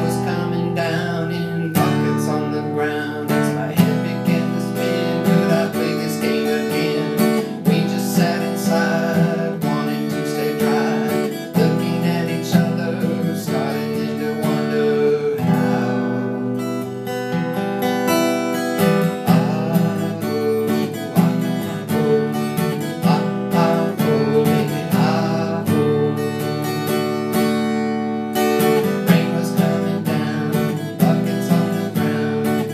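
Epiphone Masterbilt acoustic guitar strummed steadily, playing a chord progression with the chords changing every couple of seconds.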